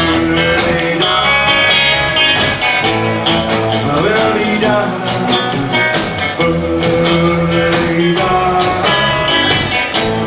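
Live rockabilly band playing, with guitar lines over a steady drum beat.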